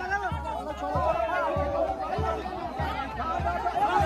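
Many men's voices calling out and talking over one another as a group hauls a heavy pine log by hand. Under the voices a steady low thud repeats about every half second.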